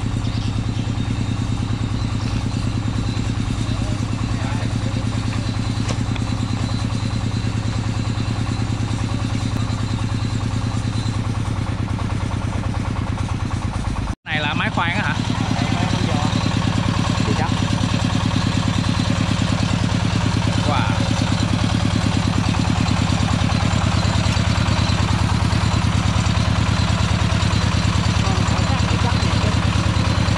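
Engine running at a steady speed, broken by a momentary dropout about halfway through. In the second half it is the engine driving a small soil-investigation drilling rig, running a little louder and steady while it bores.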